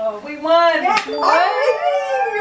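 Young women whooping and squealing in high, drawn-out voices as they cheer, with a single sharp hit about a second in.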